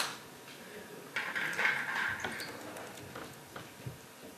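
A sharp click, then about a second of rustling and a few light taps and knocks in a quiet hall.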